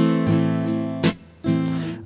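Acoustic guitar strummed on an A minor chord in a standard strumming pattern. A chord rings out, a sharp stroke about a second in cuts it short, and after a brief gap another strum rings on.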